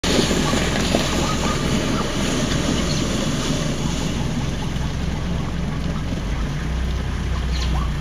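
Herd of plains zebras galloping past over a dusty dirt track, their hoofbeats mixed into a loud, steady rush of wind on the microphone over a low engine hum.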